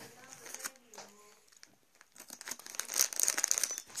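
Close rustling and crinkling, starting about two seconds in and growing louder. It follows a faint, muffled voice at the start and a brief near-silent gap.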